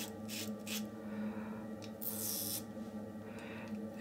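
Double-edge safety razor (a Yates Titanium 921-M) scraping through lathered stubble in a few short, soft strokes, with one longer stroke near the middle.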